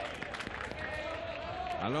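Open-air ambience of a small football ground: a steady background hum with faint, distant voices of players and spectators. The commentator's voice starts at the very end.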